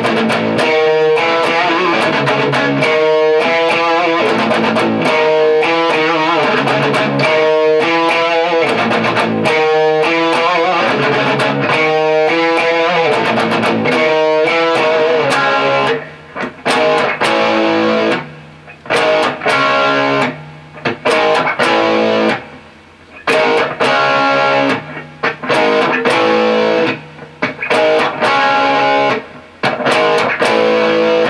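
Electric guitar with distortion in standard tuning, playing the song's riffs. Dense, even picking runs for about the first half, then chords come in short phrases broken by brief pauses.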